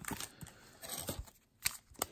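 Hands taking a wax pack of trading cards out of a cardboard display box: a few faint taps and rustles of paper and card, with a sharper click near the end.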